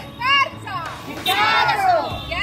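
A group of women shouting protest slogans in high, loud voices. There is one short shout near the start, then from a little past the middle a long, drawn-out shout from many voices together.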